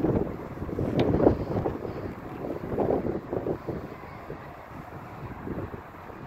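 Wind buffeting a phone's microphone in uneven gusts, strongest in the first few seconds and easing after about four seconds, with a brief click about a second in.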